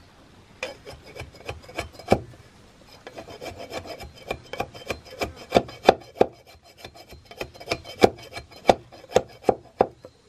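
A broad knife blade shaving and scraping a handle blank braced on a wooden stump: repeated sharp rasping strokes at an uneven pace, one to two a second, softer for a moment early on and loudest in the second half.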